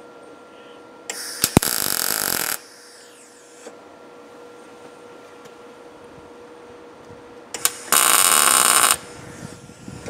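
MIG welder laying two tack welds on a steel plate: two bursts, the first about a second in and lasting about a second and a half, the second near the end, shorter and louder.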